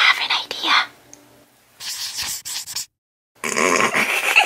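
A person whispering in two short breathy stretches, the second about two seconds in. A brief dead-silent gap follows before voices return.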